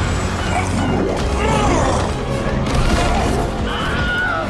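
Film trailer soundtrack: loud dramatic music mixed with fight sound effects, crashes and impacts, over a low rumble.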